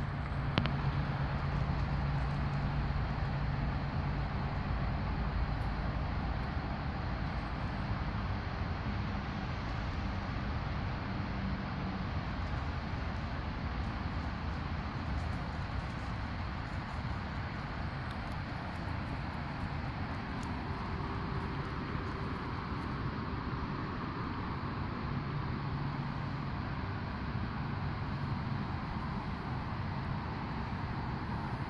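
Steady outdoor background rumble, with a low hum that is strong for the first dozen seconds, fades, and returns near the end.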